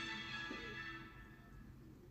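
Soft background music with held notes, fading out over the second half.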